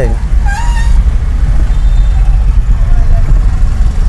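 Steady low rumble of a car's engine and road noise inside the cabin as it moves slowly through traffic. About half a second in, a brief high-pitched sound rises and then holds.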